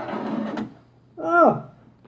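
Plastic Lite-Brite toy being handled and swung round, a rustling scrape ending in a click about half a second in; then a short vocal exclamation that slides down in pitch.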